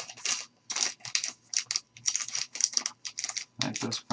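Clear soft plastic card bag crinkling and rustling as hands handle it, in quick irregular crackles with small clicks.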